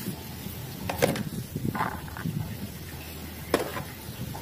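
Mud-coated plastic toys being handled and picked up, with a few light plastic knocks, one about a second in and another near the end, and soft scraping between them.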